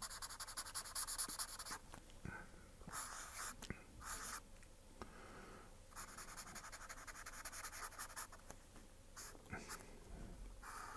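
Felt-tip marker scratching on paper as coins are drawn and filled in with quick back-and-forth strokes. The strokes come in several spells with short pauses between them.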